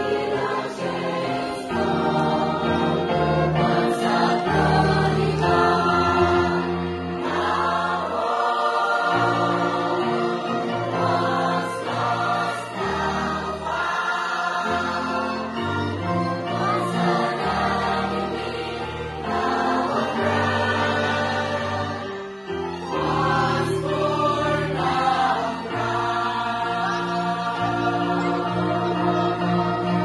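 Mixed church choir singing a hymn in full harmony, accompanied by a small orchestra of violins, cello and winds.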